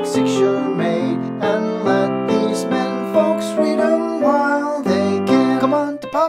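Piano accompaniment to a 1920 popular song playing alone with no voice: repeated chords and a melody on a steady beat.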